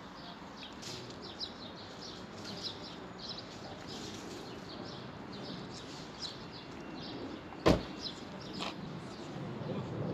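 Outdoor street ambience: a steady low hum of traffic with small birds chirping repeatedly throughout. A single sharp knock comes about three quarters of the way through.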